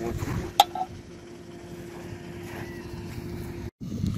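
Wind on the microphone over a steady low motor hum, with a single sharp click about half a second in. The hum cuts off abruptly near the end in a brief dropout.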